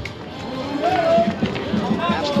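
Voices calling out over salsa music, with the music's bass dropping away at first and coming back near the end.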